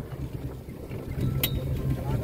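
Low steady hum of a small utility vehicle's engine as it drives over grass, with a single sharp click about one and a half seconds in.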